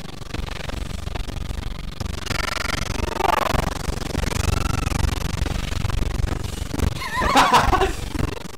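Monster roars and growls from an animated fight soundtrack. Pitch-gliding cries come a couple of seconds in and again near the end, where they are loudest, over a steady low rumble.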